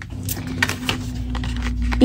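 Paper and sticker packaging being handled, with a few soft clicks and rustles, over a steady low hum.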